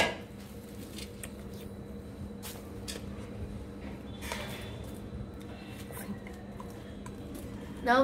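A few faint clicks and scrapes of a plate and vegetable peels being tipped into a clay pot of soil, over a steady low hum.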